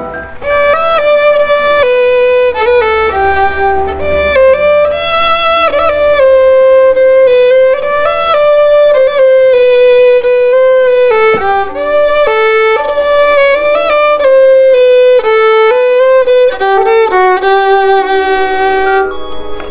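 Solo violin playing a slow melody, one note at a time, most notes held for about a second.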